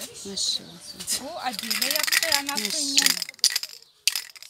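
Plastic film crackling as it is handled and pressed flat onto a table: a dense run of small clicks and rustle through the middle, thinning out near the end.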